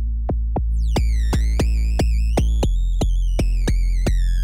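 Omnisphere's "Krunk 808 Kik" synth patch being played: a deep, sustained 808-style kick bass under a steady clicking pulse about three times a second. About a second in, a bright, bending high tone with overtones comes in on top, the patch's mod-wheel FM layer. The bass note steps lower near three seconds in.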